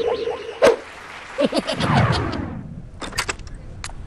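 Cartoon sound effects: a sharp crack a little over half a second in, followed by brief pitch-bending vocal sounds from the characters, then a run of quick, sharp clicks near the end.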